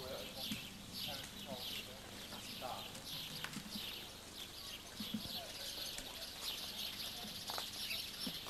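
Small birds chirping over and over, with faint voices of people in the background.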